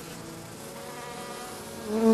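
Honey bees buzzing: a steady hum of several tones that grows louder near the end.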